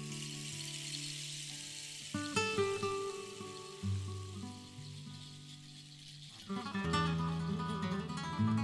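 Oud and acoustic guitar playing together in a slow, sparse passage, plucked notes left to ring. It grows quieter in the middle, then the plucking grows busier near the end.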